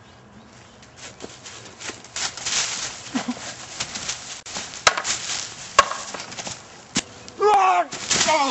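Scuffling and rustling in dry leaves, with three sharp knocks about five, six and seven seconds in as a long wooden pole is swung. A person cries out with a falling 'oh' near the end.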